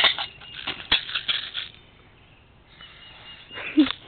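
Clicking and rattling of a plastic airsoft shotgun and its magazine being handled as the clip is fitted into the gun, with one sharp click about a second in, then quieter.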